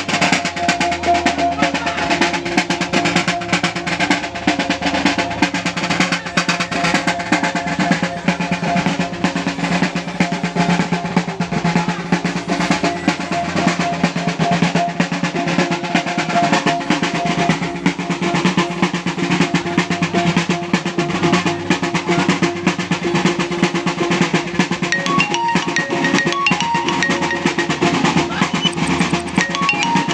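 Maguindanaon Sagayan dance music played on hand-held barrel drums: fast, unbroken drumming with steady ringing tones underneath. Near the end, higher struck notes join in.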